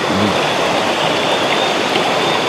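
Steady rushing of river water, an even noise with no breaks.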